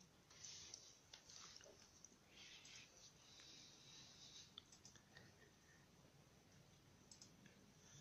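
Near silence, with faint clicks and soft rustling that are mostly in the first half.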